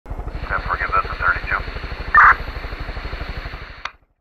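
Helicopter rotor beating rapidly and steadily, with a voice over a radio talking across it in the first second and a half and a short louder burst of it around two seconds in. The rotor fades out and stops just before the end.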